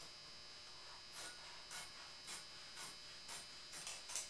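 Scissors snipping through canvas cloth in a steady series of faint, crisp cuts, about two a second.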